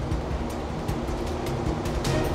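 Steady low rumble of ambient noise in a metro tunnel under construction, even throughout.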